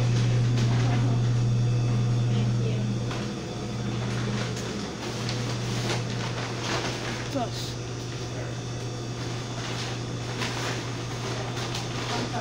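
Steady low hum of a restaurant dining room's background machinery, dropping a little in level about three seconds in, with faint background voices and a few small knocks.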